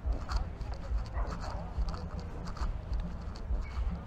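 Footsteps on a path, a steady walking rhythm of about two soft thuds a second.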